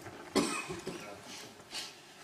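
A person coughs sharply once, about a third of a second in, followed by quieter breathy sounds.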